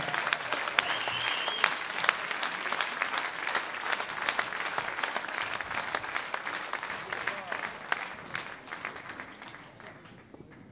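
Concert audience applauding, the clapping gradually dying away toward the end, with a brief high whistle from the crowd about a second in.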